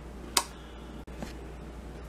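A single sharp click, then a fainter tick about a second later, over a steady low hum.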